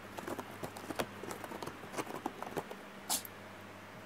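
A cat's paws and claws scratching and tapping on cardboard: a run of light, irregular scratches and taps, with one sharper hissy scrape about three seconds in. A small electric circulator fan hums steadily underneath.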